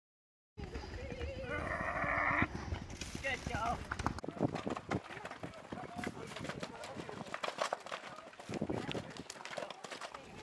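Horse hooves galloping over the ground, a run of quick irregular thuds, with voices in the background.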